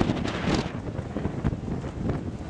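Wind buffeting the camera microphone in uneven gusts, with a sharp knock right at the start and a louder gust about half a second in.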